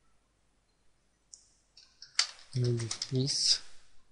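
Computer keyboard typing a short burst of keystrokes, starting about a second in, as a post title is entered. A man speaks a couple of words over it in the second half, the loudest sound.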